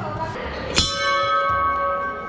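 A hanging metal temple bell struck once, just under a second in, then ringing on with several clear tones that fade slowly.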